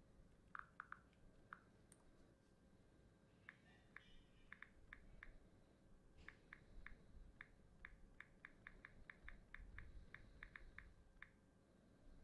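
Near silence with faint, light clicks. A few come in the first two seconds, then an irregular run of about twenty follows from about three seconds in, like keys being tapped.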